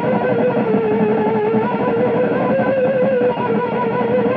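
Electric guitar holding one long sustained note whose pitch wavers slowly up and down, played as a voice-like effect.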